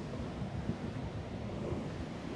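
Wind buffeting the microphone over the steady rush of the Rhine Falls' churning water.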